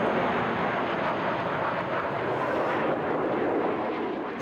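Four jet fighters flying low past in formation, a steady jet noise that eases slightly near the end.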